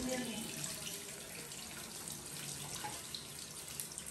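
Kitchen tap running steadily into a stainless steel sink, the water splashing through a metal mesh colander as food is rinsed in it by hand.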